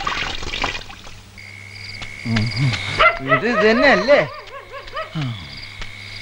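Film background music dying away in the first second, then a steady night-time insect chirring. Over it, a series of wavering, rising-and-falling voice-like calls come between about two and four seconds in, with a short falling call just after five seconds.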